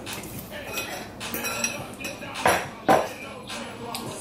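A metal fork clinking and scraping against a bowl as spicy noodles are stirred and eaten: a handful of short clinks, the two loudest about two and a half and three seconds in.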